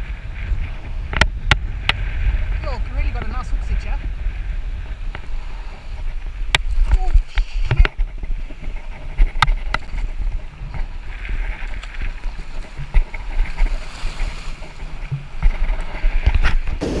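Surf washing over a rock shelf and wind buffeting an action-camera microphone in a steady low rumble, with a few sharp clicks and knocks from handling.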